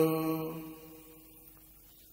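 A Buddhist monk's voice chanting Pali verse, the held last note of a line fading out over about the first second, then a pause of near silence.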